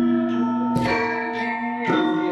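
Javanese gamelan ensemble playing: bronze metallophones and pot gongs are struck in an unhurried pulse, and each stroke leaves long, overlapping ringing tones.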